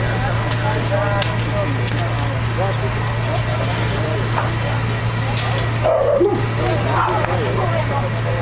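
Fire engine pump running with a steady low drone, under distant voices; a short, louder call breaks through about six seconds in.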